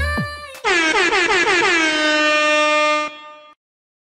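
A loud, sustained horn-blast sound effect: one long note whose pitch drops at its start, then holds steady for about two and a half seconds before fading out.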